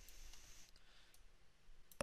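Near silence with a few faint computer mouse clicks, one just before the end.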